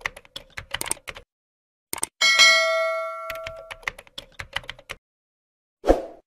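End-screen animation sound effects: a rapid run of keyboard-typing clicks, then a bell ding about two seconds in that rings out for over a second, followed by more typing clicks and a thump near the end.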